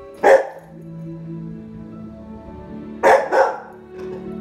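Bernese mountain dog puppy barking: one loud bark just after the start, then two quick barks about three seconds in, over soft film music playing from the TV.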